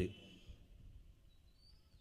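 A pause between phrases of a man's amplified speech: his last word fades out, then near silence with faint room hum and a faint short high chirp near the end.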